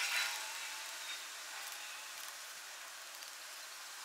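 Faint steady hiss of quiet background room tone, with no distinct sound of the work itself.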